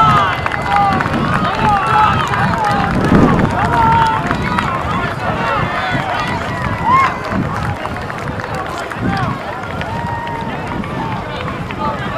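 A crowd of spectators shouting and cheering runners on, many voices yelling over one another at once.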